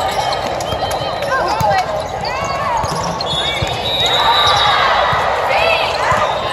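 Indoor volleyball rally: the ball is struck a few times by players' arms and hands, sneakers squeak on the sport-court floor, and players and spectators call out and talk throughout.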